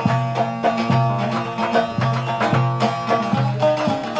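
Instrumental passage of an Aegean Turkish folk tune (türkü), with no singing, played over a steady, repeating beat and bass line.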